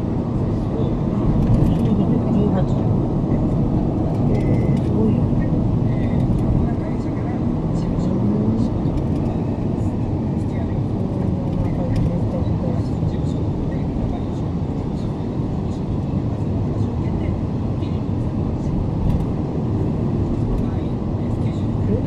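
Steady road and engine noise heard inside a moving car's cabin: an even, low rumble with no sudden events.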